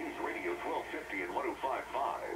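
A radio announcer talking, received by a homemade breadboard superheterodyne AM radio and heard through its speaker; the voice sounds thin, with no bass or treble, as AM reception does.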